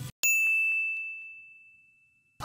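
A single ding sound effect: one bright bell-like tone that strikes suddenly and rings, fading away over about two seconds.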